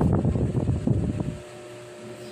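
Low rumbling noise, the kind left by wind or handling on a microphone, that cuts off about one and a half seconds in, leaving a faint steady hum.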